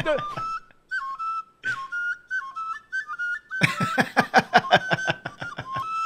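A high whistle playing a short tune that steps back and forth between two or three notes, over and over. A loud burst of laughter cuts in about halfway through.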